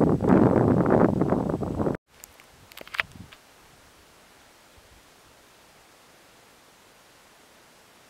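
Wind buffeting a handheld camera's microphone, a loud, rough rustle that stops abruptly about two seconds in. After that there is only a faint steady hiss, with a couple of soft knocks a second later.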